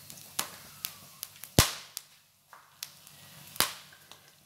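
Whole spices, cumin seeds among them, crackling in hot oil in a frying pan as they temper: scattered sharp pops at irregular intervals, two louder ones about a second and a half in and near the end.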